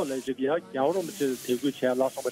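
Only speech: a man talking in Tibetan.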